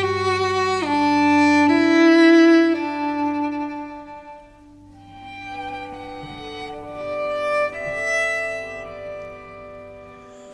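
Instrumental interlude of bowed strings playing a slow melody in long held notes that step from one pitch to the next, over a low sustained bass note. The bass note is strong for about the first four seconds and fainter after that.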